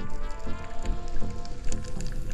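Background music with sustained chord tones, over a low underwater rumble scattered with small crackling clicks.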